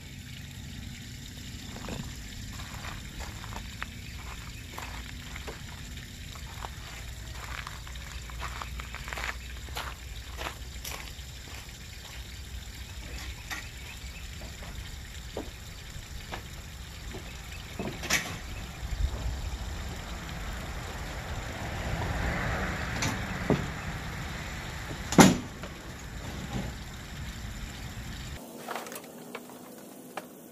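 A low steady background rumble with scattered light clicks and knocks, a few sharper knocks around 18 and 23 seconds in and the sharpest about 25 seconds in. The rumble cuts off suddenly shortly before the end.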